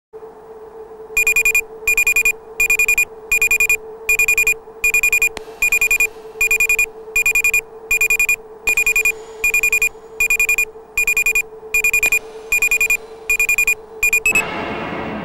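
A bell ringing in short, evenly spaced bursts, about four every three seconds, starting about a second in, over a steady low hum.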